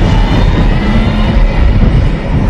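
Loud backing music of a title sequence, dominated by a heavy low rumble.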